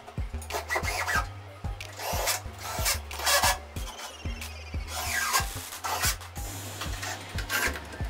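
Cordless drill running in about four short, harsh bursts as it drills and drives screws through a wall-mounted frame, over background music with a steady beat.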